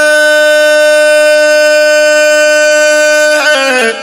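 A man's voice singing a Pashto naat, holding one long, steady note for a little over three seconds before breaking into a short wavering run near the end.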